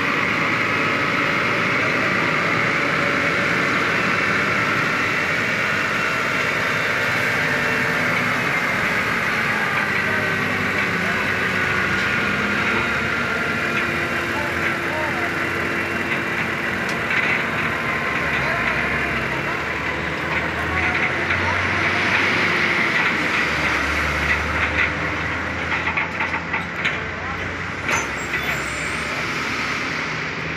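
Heavy diesel trucks running beside a long multi-axle modular trailer convoy, with a steady mechanical din and people's voices in the background. A deeper engine rumble builds in the second half, and a few sharp clicks come near the end.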